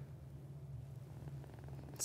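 Faint steady low hum of room tone.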